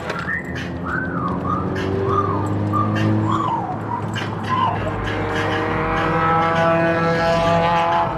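Seat Leon FR driven hard on a race track, heard from inside the cabin. In the first few seconds the tyres squeal with a wavering pitch through a corner; from about halfway the engine pulls up through the revs as the car accelerates down the straight, its pitch climbing steadily.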